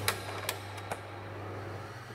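Glitch-style transition sound effect: a steady low hum under a faint hiss, broken by a few sharp clicks in the first second.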